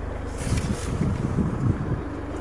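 Wind buffeting and handling rumble on the camera microphone as the camera is moved, irregular low rumbles starting about half a second in, over a steady low hum.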